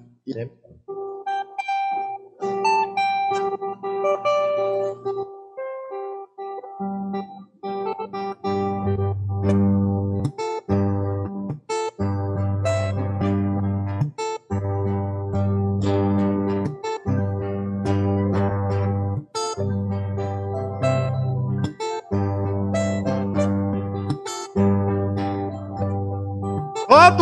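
Two acoustic guitars playing an instrumental introduction to a toada: a few single plucked notes at first, then from about eight seconds in, steady rhythmic strumming over a bass line.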